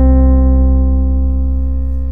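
A held C major seventh chord on an electronic keyboard sound, steady throughout: the I chord of a diatonic progression in C major.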